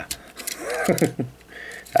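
Light plastic clicks from the knockoff brick model's spring-loaded missile shooter being pressed without firing, with a man's brief wordless voice, like a stifled laugh, in the middle.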